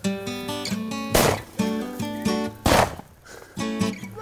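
Two shotgun shots about a second and a half apart, the loudest sounds here, over background acoustic guitar music.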